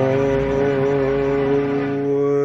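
An elderly man's singing voice holding one long note, with a slight waver, over a backing track with a steady low chord.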